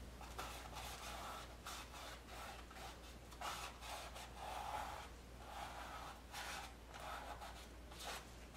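Faint scrubbing of a small brush with oil paint on stretched canvas, in short irregular strokes, over a steady low hum.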